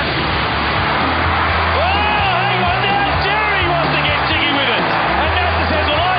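Background music with a steady bass line, with voices mixed in over it.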